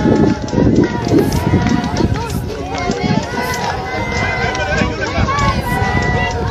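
Several people's voices overlapping, with no clear words, over a steady low rumble on the microphone.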